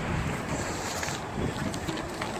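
Wind buffeting the microphone over a low, steady rumble.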